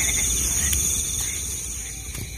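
A chorus of night insects, crickets among them, sounding steadily: high constant trills with a faster pulsing trill below them, over a low rumble, all fading slightly in the second half.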